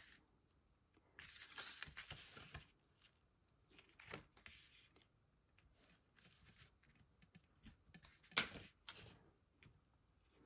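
Faint handling of paper and tape: double-sided adhesive tape pulled off its roll for about a second and a half near the start, then scattered soft rustles and small taps as the tape is laid along the edge of cardstock and pressed down.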